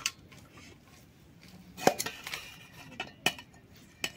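Metal spoon knocking and clinking against a steel pot of cooked rice, about half a dozen separate knocks, the loudest about two seconds in.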